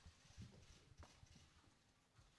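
Near silence: faint room tone with a few soft, low knocks.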